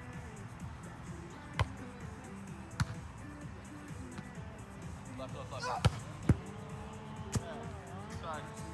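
Sharp slaps of hands and forearms striking a beach volleyball during a rally: five hits, two of them close together about six seconds in, the loudest of all.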